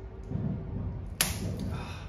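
A stretched strip of TPU paint protection film snapping once, sharp and sudden, about a second in, as the strain between the hands lets go.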